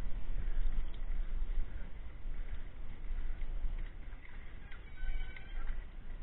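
Low wind rumble on the action-camera microphone, with the uneven clatter and tread of mountain bikes and riders moving past on a leafy dirt trail.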